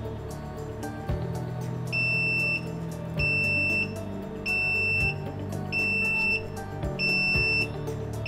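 Network video recorder's alarm buzzer beeping, a high steady beep of about two-thirds of a second repeating roughly every 1.2 seconds from about two seconds in: the line-crossing tripwire alarm has been triggered. Background music plays underneath.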